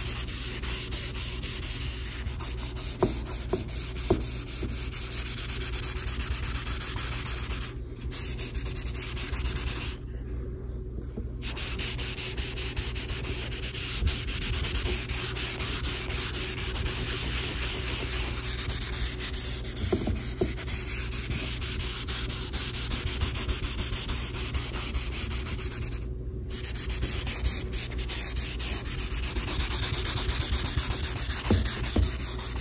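A metal mechanical pencil's lead scratching and rubbing on paper in continuous shading strokes, laid down with the side of the lead. The strokes stop briefly a few times, and there are a few light clicks.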